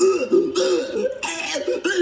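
A man's voice making exaggerated, cartoonish retching and coughing noises, a puppet character forcing himself to throw up. Heard as played through a TV.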